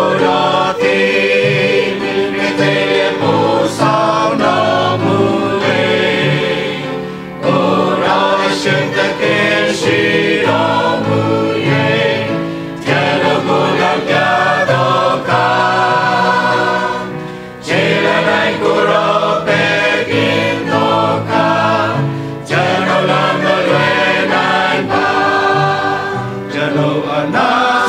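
Mixed church choir of men and women singing together, in phrases broken by short breaths about every five seconds.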